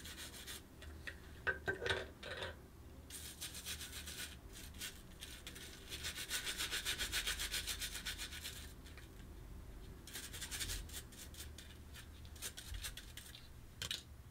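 Soft-bristle brush scrubbing metal safety-razor parts in soapy water: faint bristle-scrubbing strokes in short bouts, with a quicker run of about five strokes a second in the middle.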